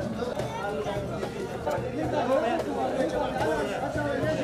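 Chatter of many men's voices talking over one another, with no single voice standing out.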